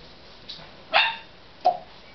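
Pet parrot imitating a dog's bark: a louder bark about a second in, then a shorter one just after.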